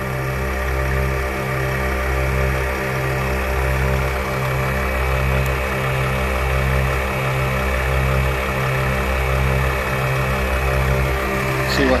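ARB twin air compressor running steadily under load while it fills two 34-inch tyres at once through a dual inflator. It gives a continuous hum with a low pulsing beat about twice a second.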